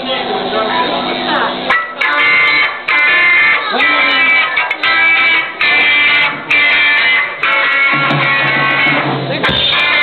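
Live punk band playing: distorted electric guitar hitting chords in short, choppy blocks with brief breaks between them, coming in about two seconds in.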